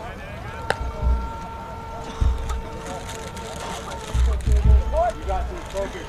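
A single sharp crack of a metal baseball bat meeting the pitch, a little under a second in; the count stays at two strikes, so the swing is fouled off. A steady held tone with several pitches together follows for about five seconds, under scattered voices and wind rumbling on the microphone.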